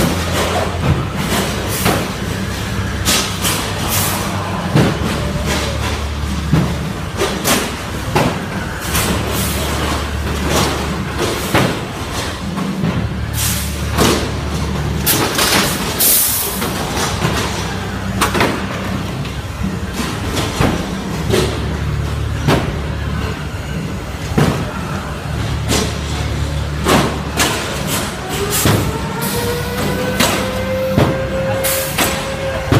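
Combat robots repeatedly banging and crashing, metal on metal and against the arena walls, over loud arena music with a heavy bass line. Near the end a motor whine rises steadily in pitch.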